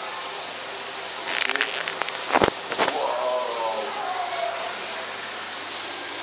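Two sharp knocks about two and a half seconds in, after a short rustle, from a phone being handled and moved. Steady background noise and a voice in the background follow the knocks.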